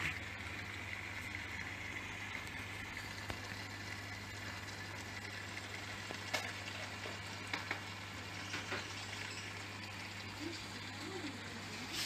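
Aquarium filter and aeration equipment running: a steady low hum under a constant fizzing of water and bubbles, with a few faint clicks.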